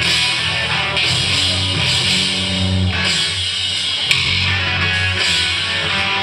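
Live rock band playing an instrumental passage with no singing: electric guitar over keyboards, with sustained low notes and regular cymbal or drum hits about every second.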